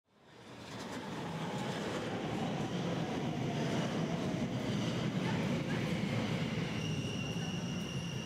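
Steady rumble of a train or metro carriage running on rails, fading in over the first second.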